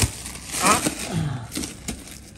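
Clear plastic wrapping crinkling as it is peeled and pulled off a power amplifier's metal case, with a sharp click at the very start.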